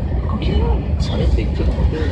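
Steady low rumble of a SAT721 series electric train running at speed on its track, heard from inside the car, with people talking and laughing over it.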